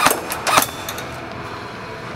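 Umarex MP5 A5 airsoft electric gun (AEG) firing a few quick shots in the first half-second or so, each a sharp crack, over a steady background hiss.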